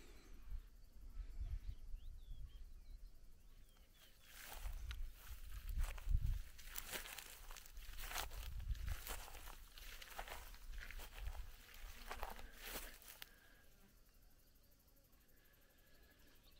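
Faint, irregular footsteps rustling through dry grass and wildflowers, with low rumbles on the microphone; it dies away to near silence near the end.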